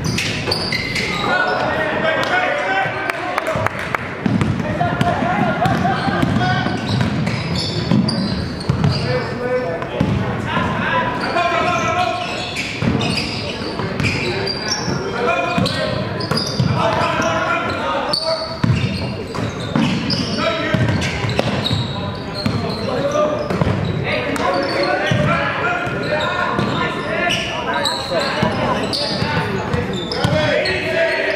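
Voices of spectators and players calling out in an echoing gym, with a basketball bouncing on the hardwood floor and sneakers moving on the court. The voices get louder suddenly right at the start.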